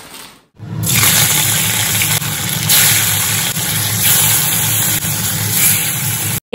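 Pieces of fish frying in hot oil in a steel wok on a gas stove: a loud, steady sizzle that starts abruptly just under a second in.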